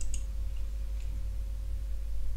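A couple of faint computer mouse clicks, about a second apart, over a steady low hum and hiss: the noise floor of a budget electret USB microphone.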